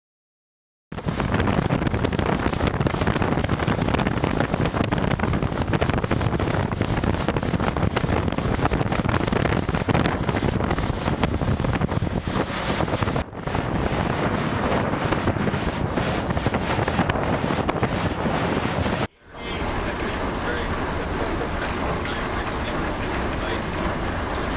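An icebreaking cutter grinding and crunching through a sheet of river ice, a dense crackling din that starts about a second in. Near the end it gives way to a steadier, quieter noise.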